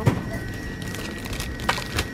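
A few light clicks and knocks of plastic-wrapped stationery being put into a metal wire shopping cart, over a steady background hiss with a faint high whine.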